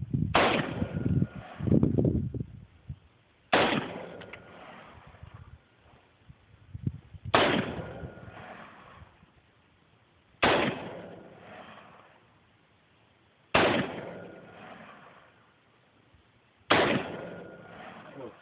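Kel-Tec PLR-16 5.56 mm semi-automatic pistol fired slowly, six single shots about three seconds apart. Each shot is sharp and loud, with a long echo that fades over a second or two.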